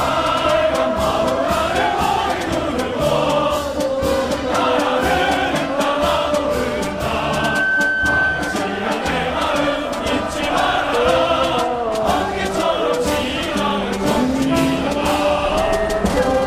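A choir singing a song with instrumental backing, at a steady level throughout.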